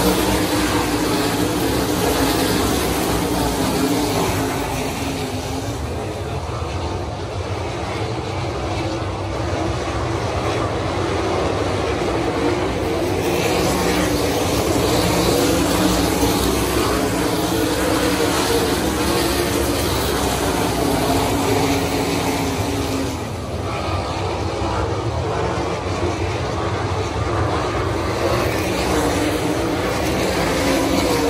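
A field of 410 winged sprint cars racing on a dirt oval, their methanol-fuelled 410 cubic-inch V8s running at high revs in a continuous drone that swells and fades as the pack circles the track. The sound eases a few seconds in and dips again briefly about three-quarters of the way through.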